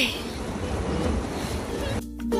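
Steady wind noise on the microphone, a low rush, with sea surf beneath it.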